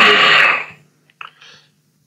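A man's voice on an online call trailing off in the first half second. Then near silence, broken by one faint click about a second in.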